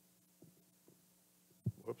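Quiet room tone with a low steady hum, then a single sharp knock about one and a half seconds in, met at once by a man saying "whoops".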